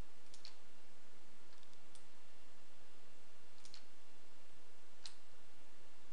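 A few light, sharp computer-mouse clicks, spaced a second or more apart, as lines are drawn in a drawing program. They sit over a steady low hiss and hum.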